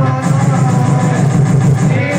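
Tamil devotional bhajan music to Murugan: voices and instruments with a steady beat.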